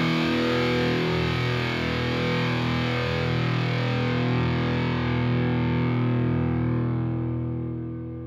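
Instrumental music: a held, distorted guitar chord treated with effects, ringing on steadily. Its treble dies away through the second half, and it begins to fade near the end.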